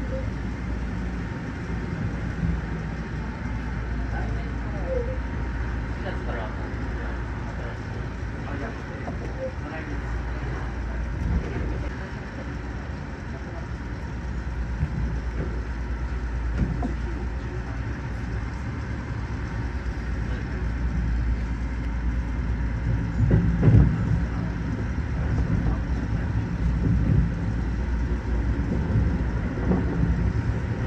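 Keio Line electric train running on the track, heard from inside the driver's cab: a steady low rumble of wheels on rail and running gear. Louder knocks and rumbling come about three-quarters of the way through.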